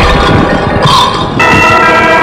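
Film background score built on sustained, ringing bell-like tones. Just under a second in the tones drop out for about half a second and a single brighter chime sounds, then the sustained tones return.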